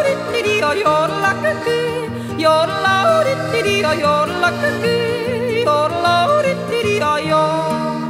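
A woman yodeling a traditional Swiss yodel song. Her voice leaps rapidly up and down in pitch over a steady folk accompaniment of sustained chords and bass.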